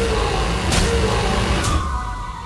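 Trailer sound design: a heavy, engine-like low rumble with sharp hits about once a second. It cuts off just before the end.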